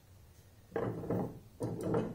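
Two short bursts of handling noise, something being slid or shifted on the workbench, about a second apart after a near-silent start.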